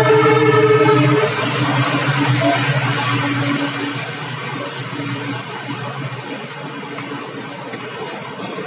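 A diesel locomotive's horn sounding, cutting off about a second in. After it, the passenger coaches of an express train passing at speed make a steady rushing rumble that slowly fades.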